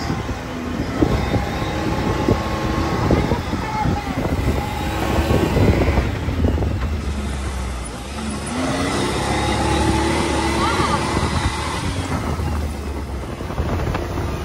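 Side-by-side UTV running under way over a dirt trail, with its engine rumbling and the open cabin rattling and knocking over bumps. About eight seconds in, the engine note rises as it speeds up.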